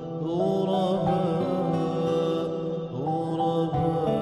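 Arabic nasheed: a male voice chanting long, held notes that glide to new pitches about half a second and about three seconds in, over a steady low backing drone.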